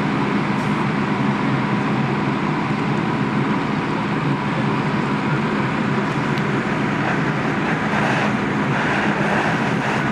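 Fire engine running, a steady loud drone with a constant low hum.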